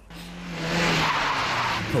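A van braking hard and skidding to a sudden stop, its tyres screeching. The screech swells over the first second and holds loud until it ends at about two seconds.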